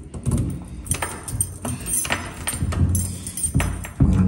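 Keys on a carabiner jangling and a key turning in a door lock, giving a run of sharp metallic clicks and rattles.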